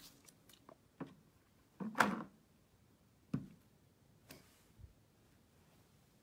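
A few light, scattered taps and knocks of a clear-mounted rubber stamp against ink pads and card stock on a wooden table. The loudest knock comes about two seconds in.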